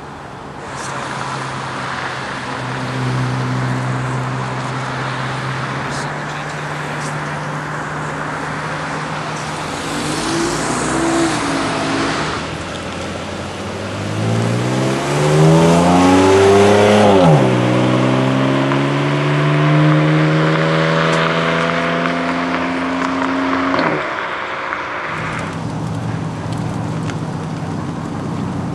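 Sports car engines driving off: a steady low exhaust drone, then one car accelerating hard, its engine pitch climbing, dropping sharply at an upshift about two-thirds of the way in, and climbing again before lifting off. A lower steady engine drone follows near the end.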